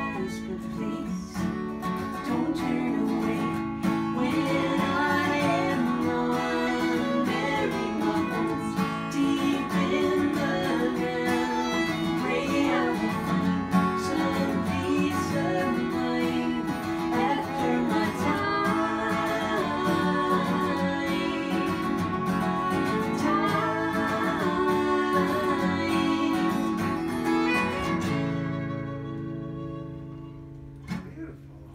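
Two acoustic guitars and a fiddle playing a folk song, with voices singing over them. The playing stops about two seconds before the end, leaving the strings ringing as they fade.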